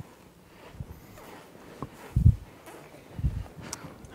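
Two dull low thuds about a second apart, with faint rustling and small clicks around them, from people moving across a stage.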